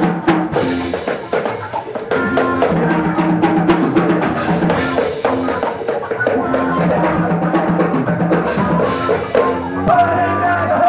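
Live band playing an instrumental stretch: drum kit and stick-struck stand-mounted drums with held bass and guitar notes, a steady beat of drum hits throughout.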